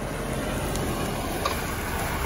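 A Mercury sedan rolling slowly past close by, its tyres and engine giving a steady running noise on the pavement.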